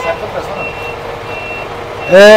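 A vehicle's reversing alarm beeping, a short high beep about every three-quarters of a second, over a faint steady hum.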